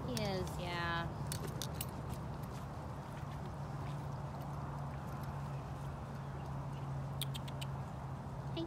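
A tiger eating meat offered through the cage wire, with a few short chewing and licking clicks, over a steady low hum. A brief falling vocal sound comes in the first second.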